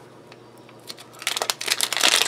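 Plastic wrapper of a trading-card fat pack crinkling and tearing as fingers rip it open, starting about a second in and getting louder toward the end.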